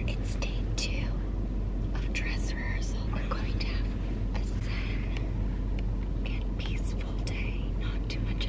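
Soft, whispered-sounding speech in short broken fragments over a steady low rumble of a car cabin.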